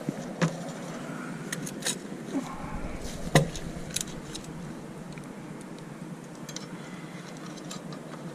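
Screws clinking and rattling as a hand rummages in a small metal bowl of them, a handful of sharp metallic clicks with the loudest about three and a half seconds in.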